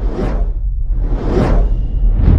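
Two whooshes of a cinematic logo-intro sound effect, each swelling up and fading away, the second just under a second and a half in, over a deep sustained rumble.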